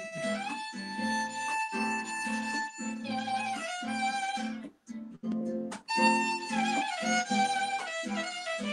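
Violin and acoustic guitar playing together: the violin holds long melodic notes over rhythmic plucked guitar chords. The sound breaks off briefly twice a little past the middle.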